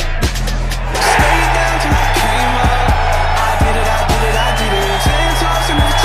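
Hip hop music with a heavy, steady bass beat. From about a second in, a gallery's roar of cheering rises under the music as the putt drops.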